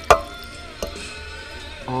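A sharp clack against a steel cooking pot, followed by a lighter knock less than a second later, as a container is tipped over the pot to add chicken and broth.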